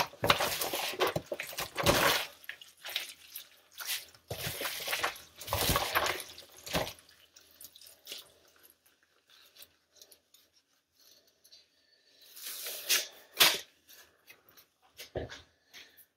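Gloved hands mixing shredded pulled pork with its fat and juices in an aluminium foil pan: irregular wet squishing and handling noises, busy for the first several seconds, dying down in the middle, then a few more bursts near the end.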